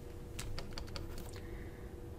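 A quick cluster of light clicks and taps in the first second: a stylus tapping on a pen tablet while writing, over a faint steady hum.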